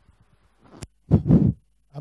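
A sharp click, then a short breathy chuckle from a man close to a table microphone.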